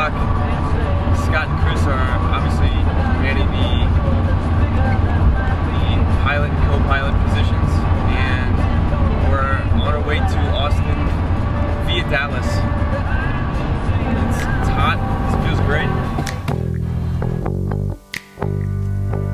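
Steady low road rumble inside a moving van, under music and indistinct voices. Near the end the cabin sound cuts off and music with drums carries on alone.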